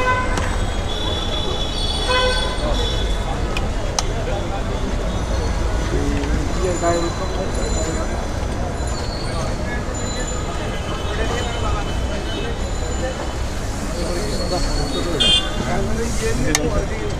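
Busy city street: a steady rumble of traffic with many short horn toots throughout, and indistinct voices of people nearby.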